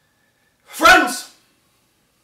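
A man's single sharp, wordless vocal outburst about a second in, lasting about half a second.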